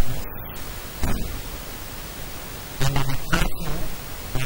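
A man speaking into microphones over a steady hiss, with a pause of about a second and a half in the middle.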